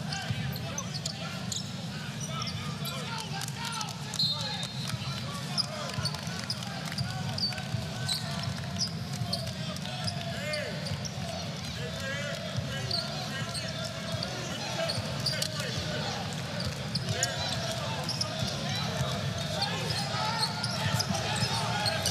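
Basketball arena sound during live play: a ball dribbled on the hardwood court, sneaker squeaks and a steady crowd murmur.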